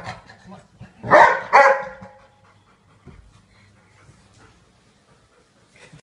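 A dog barking twice in quick succession, about a second in, then only faint sounds.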